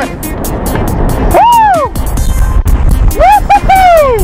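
Excited whoops of celebration, two long rising-and-falling calls and a cluster of shorter ones near the end, over a music track with a steady beat and heavy wind rumble on the microphone.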